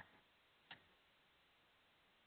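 Near silence on an open call line, with one faint click about two-thirds of a second in.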